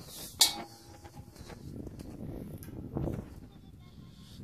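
Climbing a steep metal ladder: shoes and hands knock on the metal rungs and rails, with one sharp clank about half a second in.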